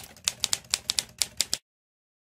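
Typewriter keystroke sound effect: about a dozen quick clacks over a second and a half, then it stops.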